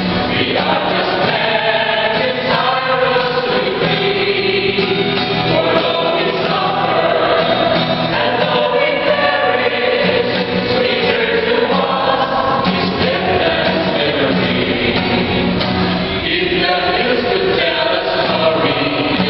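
Mixed choir of men's and women's voices singing in harmony, accompanied by a strummed acoustic guitar.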